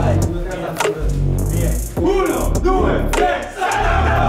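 Football players in a huddle shouting together, ending with a team chant counting to three and calling the team name, over background music with a steady beat.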